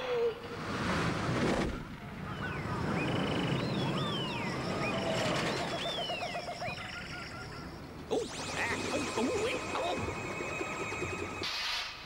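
Cartoon soundtrack of chase music with sound effects: a rushing noise in the first two seconds, then several high whistling glides, then a fast rattle from about eight seconds in.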